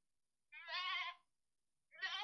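Goat bleating twice: one quavering call about half a second in, and another starting near the end.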